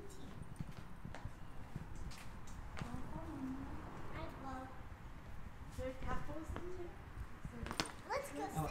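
Footsteps on concrete and stone, scattered clicks and scuffs, with a sharp click near the end. Short bits of children's voices come in now and then over a low steady rumble.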